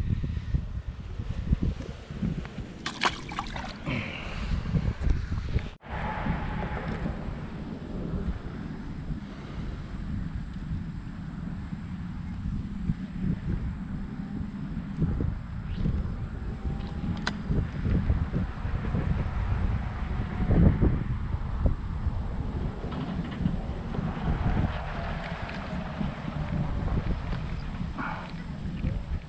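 Wind buffeting an action camera's microphone: an uneven low rumble that goes on and on, with a few short handling knocks in the first seconds. The sound drops out briefly about six seconds in, and a faint steady high whine runs on after that.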